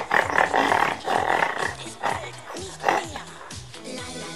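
Pig-like grunting in answer to a question, two loud rough grunts in the first two seconds, over background music.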